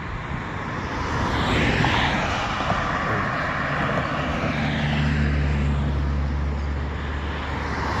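Road traffic going by on the highway: a rushing tyre and engine noise that builds about a second in, with a low steady engine hum from a heavier vehicle in the second half.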